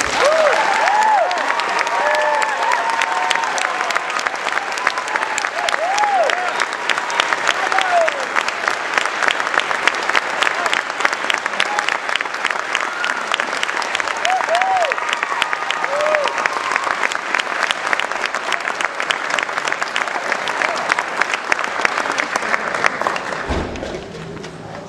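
Audience applauding steadily, with a few short whoops and cheers over the clapping. The applause dies away near the end.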